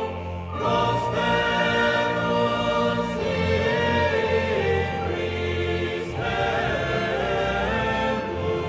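Choral music: a choir singing long held notes that change every few seconds.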